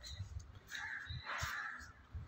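A crow cawing twice, faintly.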